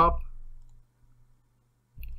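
A few faint computer mouse clicks, over a faint low steady hum.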